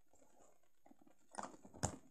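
Small plastic toy figures handled on a wooden tabletop: a few light clicks, then a sharper knock near the end as a figure is set down.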